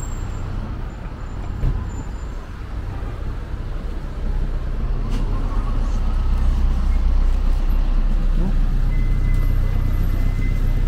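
Street traffic with vehicle engines running close by, a low rumble that grows louder about six seconds in.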